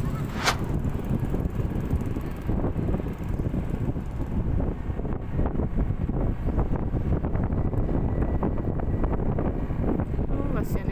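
Wind buffeting a helmet-mounted camera microphone while riding a Yamaha NMAX scooter at low speed, with the scooter's running underneath, a steady low rumble. A short hiss about half a second in.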